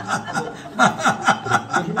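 A man laughing in a quick run of short chuckles.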